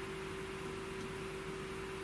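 Steady background hum and hiss with one faint, even tone, such as a small fan or powered electronics; no key clicks stand out.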